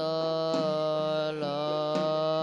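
A low male voice chanting Buddhist verses of a Bodhi puja in long, held notes, with a slight shift in pitch partway through.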